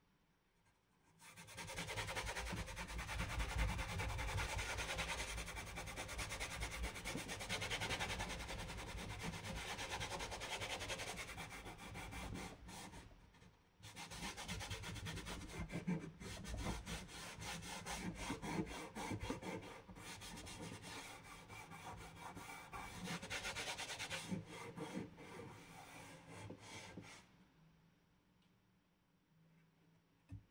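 A cloth wiping oil finish onto a wooden box: continuous rubbing of cloth on wood, with a short pause about halfway through.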